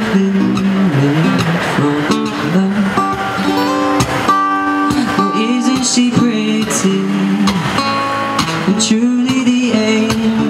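Live male vocal with strummed acoustic guitar: a young man singing long held notes that slide between pitches into a microphone, over a steady strummed guitar accompaniment.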